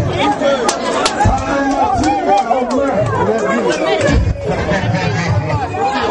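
Crowd of people talking and shouting over one another, loud and close, with a few irregular low thumps underneath.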